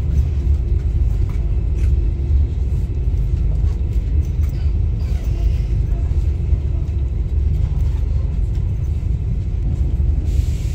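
Steady low rumble inside a KTM Tebrau Shuttle passenger train carriage as the train moves out of the station.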